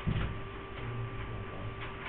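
Steady electrical hum of room tone with a soft low thump at the start and a few faint, irregular clicks.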